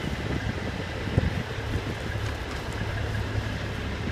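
Heavy wrecker trucks' diesel engines running steadily with a low hum, and a single brief knock about a second in.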